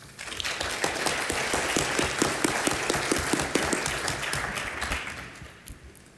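Audience applauding: the clapping swells right at the start, holds, and dies away near the end.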